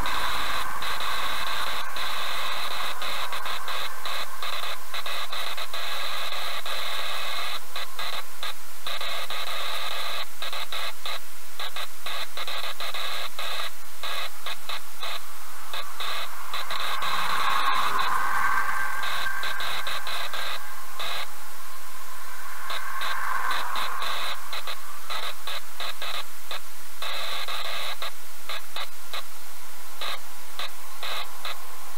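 Steady loud static-like hiss, flickering with brief dropouts throughout, with a soft swell about 18 seconds in as a truck goes by and another near 23 seconds.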